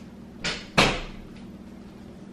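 A door being shut: two sudden knocks about a third of a second apart, the second louder.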